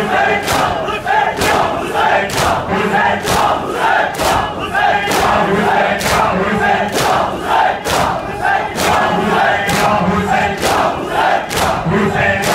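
A large crowd of Shia mourners doing matam: open hands strike bare chests in unison about twice a second, over the group's steady chanting voices.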